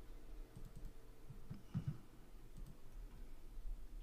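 Faint scattered clicks and soft low knocks, about half a dozen, the clearest a little under two seconds in, over a steady low hum.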